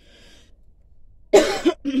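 A woman coughing: a short, loud burst of coughing a little over halfway in.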